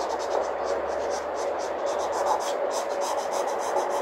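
Graphite pencil sketching on paper: quick scratchy strokes, several a second, over a steady background hum.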